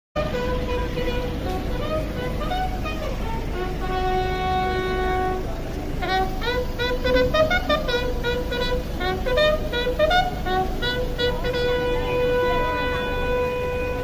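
Wind instruments, in the manner of a ceremonial salute, playing a slow tune of long held notes, with a run of shorter, sliding notes in the middle.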